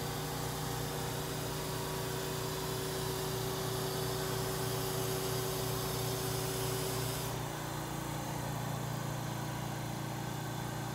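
Forklift running steadily while it carries a vacuum lifter holding a sheet, with a steady higher whine and hiss over the engine that cut off about seven seconds in.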